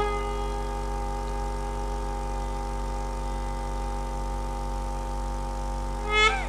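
Conch shell (shankh) blown in one long, steady held note.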